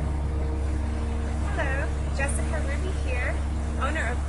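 Steady low rumble and hiss of a pond fountain's falling water, with a woman's voice starting to speak partway through.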